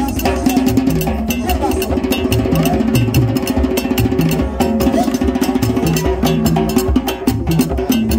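Haitian Vodou drumming: tall hand drums playing a fast, steady rhythm of sharp, cracking strokes over a pulsing low beat.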